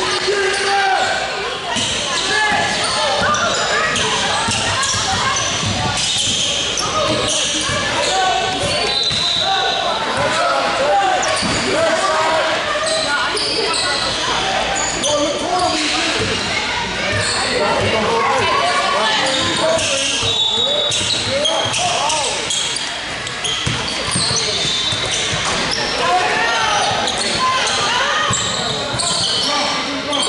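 Basketball bouncing on a hardwood gym floor during play, with brief high squeaks, amid many overlapping, indistinct voices of players and spectators, echoing in a large hall.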